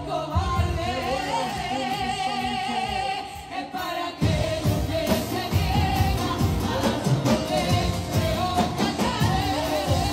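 A group of women singing together into microphones, amplified through stage speakers, with acoustic guitar accompaniment. About four seconds in, the accompaniment comes in fuller and louder with a steady rhythm under the voices.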